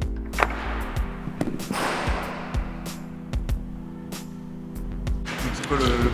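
Background music of steady held chords, with scattered sharp clicks and knocks over it.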